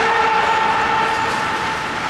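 A horn sounding one long, loud, steady blast with several tones at once.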